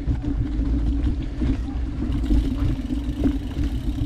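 Wind rumble on the microphone of a camera riding along on a mountain bike descending a dirt trail, mixed with the tyres rolling over dirt and rock, with a steady low hum.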